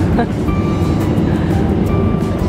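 Steady low rumble of airliner cabin noise from the jet engines and air flow, with a few held tones over it.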